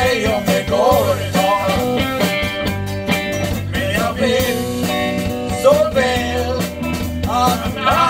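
Live band music played on stage: electric bass, electric guitar, mandolin and drums, with male voices singing into microphones.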